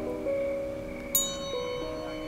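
Soft background music of sustained, slowly changing notes, with a bright bell-like note struck about a second in that rings on.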